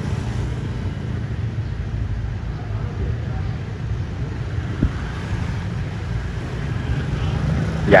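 Low, steady engine rumble of street traffic as a car and motor scooters pass close by, with a single light knock about five seconds in.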